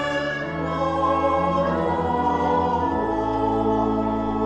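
Church choir singing sustained chords with organ accompaniment, the harmony shifting about half a second in and again about three seconds in.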